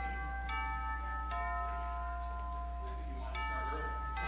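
Slow bell-like chime notes, struck one at a time about a second apart, each ringing on with a long tail. Under them runs a steady low electrical hum.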